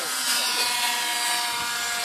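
Radio-controlled model airplanes flying past, their motors and propellers making a steady whine over a rushing hiss.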